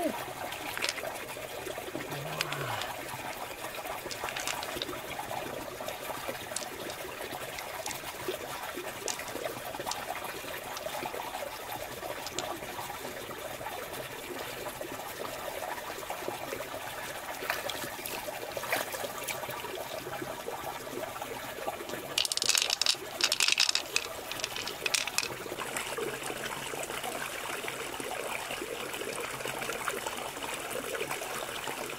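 Water trickling steadily, with scattered small clicks. About three-quarters of the way through comes a few seconds of louder, sharp, crackling noise.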